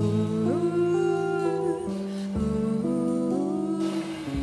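Female jazz vocalist improvising wordlessly into a microphone, holding long notes that glide up and down in pitch, over sustained lower notes that change every second or two.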